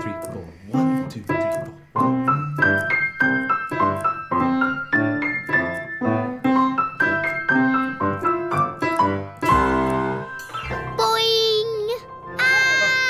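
Upright piano playing a simple tune note by note, with a lower accompanying part beneath it, as a child and an adult play together. The tune closes on a loud low chord about ten seconds in, and a warbling high tone follows near the end.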